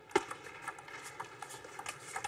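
A table tennis rally: the ball clicking off rubber bats and the table, with one sharp loud hit just after the start as the serve is struck, then a run of lighter, irregular ticks.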